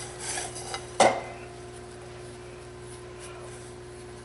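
Hands kneading a sugar-and-condensed-milk dough in a bowl: soft rubbing and pressing, then one sharp knock against the bowl about a second in. After that only a faint steady hum.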